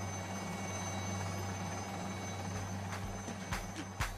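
A steady low hum with faint steady high whining tones. Soft low thumps come in during the last second or so as a dance-music beat starts.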